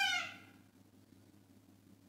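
A single short, high-pitched call that rises and falls in pitch and fades out about half a second in, followed by near silence with a faint low hum.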